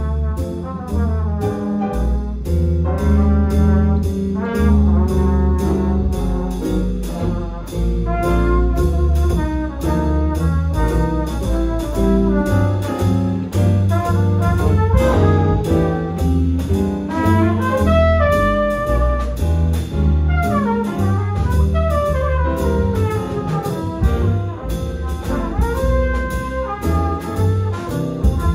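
Big band playing swing jazz: saxophone, trumpet and trombone sections over a rhythm section of upright bass, acoustic archtop guitar, piano and drums, with a steady beat.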